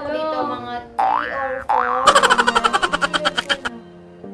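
Cartoon-style 'boing' sound effects: two quick springy rising glides about a second in, then a rapid rattling trill of about ten pulses a second that fades out over about a second and a half.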